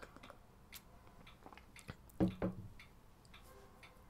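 A man's mouth noises at the microphone: a few faint lip and tongue clicks, then two short voiced sounds like a brief "mm" a little over two seconds in.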